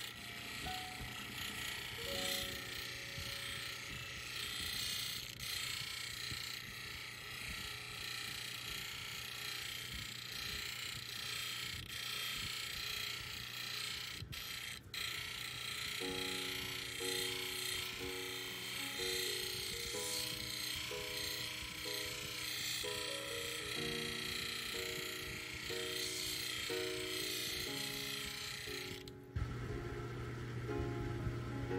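A 600-grit lapidary grinding wheel running with a steady hiss and a low motor hum as an opal is ground wet against it; the hiss stops suddenly just before the end as the stone is lifted off. Background music with a piano-like melody plays over it, plainest in the second half.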